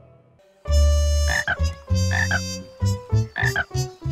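Cartoon frog croaking: a run of deep croaks beginning about half a second in, the first long and the later ones shorter and quicker.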